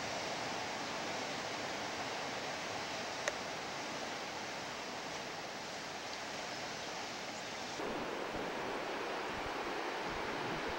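Steady wash of ocean surf in a rocky cove heard from the cliff high above it, mixed with wind. A small click about three seconds in, and the noise turns rougher and lower near the end.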